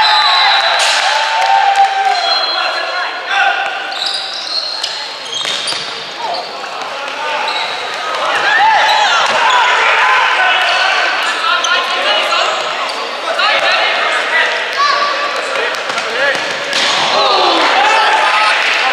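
Indoor futsal play on a hardwood court in a reverberant hall: shoes squeaking on the wooden floor again and again, the thud of the ball being kicked, and players' shouts.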